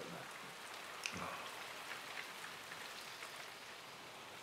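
Faint steady rain, with a few light ticks and one small sound about a second in.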